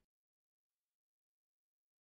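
Complete silence: no sound at all.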